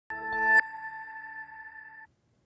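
TV news intro sting: a chord of several tones swells for about half a second, then breaks off, leaving one ringing tone that fades away.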